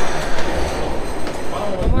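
Ropeway (cable car) station machinery running with a steady mechanical rumble. Near the end it cuts to wind noise on the microphone and a voice.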